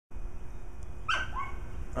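A single short yelp, falling in pitch, about a second in, over a steady low rumble.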